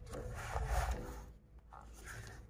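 Paper pages of a drawing book being turned and rubbed flat by hand, a rustling scrape that dies away about a second and a half in.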